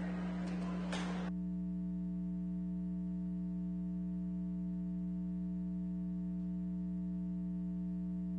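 Steady low electrical hum with faint overtones in the audio feed. A haze of room noise under it cuts off suddenly about a second in, leaving only the hum.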